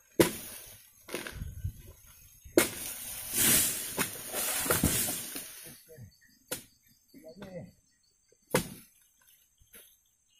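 Long-pole harvesting sickle cutting into an oil palm crown: a sharp crack at the start and another about a second later, then about three seconds of rustling and crashing as cut fronds come down through the leaves, followed by a few single knocks.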